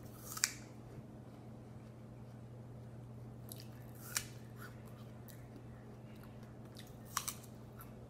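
A person biting and chewing a raw apple: sharp crisp crunches about half a second in, around the middle, and a quick double crunch near the end, with softer chewing between. A low steady hum runs underneath.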